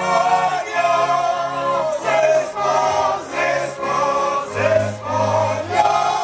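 A Terchová-style Slovak folk band of fiddles, accordion and double bass playing while the men sing together as a group of male voices.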